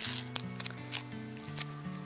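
Clear plastic zip-lock bag crinkling in the hands, with a few short sharp crackles, over background music with sustained notes.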